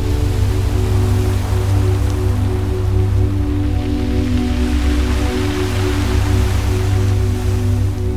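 Ambient electronic music: a held deep bass drone and sustained synth pad chords, with a hissing noise layer that swells up through the middle and fades again.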